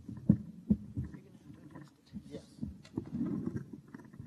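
Microphone handling noise: a few dull thumps in the first second and a half, then low rubbing and rumbling as a stage microphone is moved and adjusted on its stand during a mic change.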